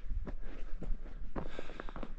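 Footsteps on an icy, partly cleared gravel driveway: several irregular steps.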